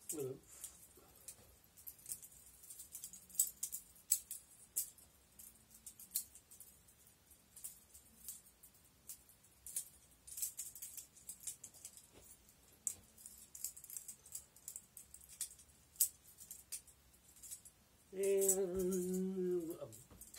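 Butterfly trainer knife (balisong) clicking and rattling in irregular runs of sharp little clicks as its handles swing open and shut and knock against the blade during flips. A louder, lower sound with a held tone comes in near the end.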